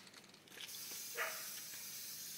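Aerosol can of black appliance epoxy spray paint hissing steadily as it sprays, starting about half a second in.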